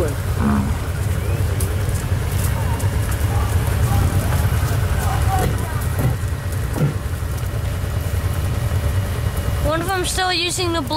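Car engine running, a steady low rumble heard from inside the car with its window open, with faint voices in the background.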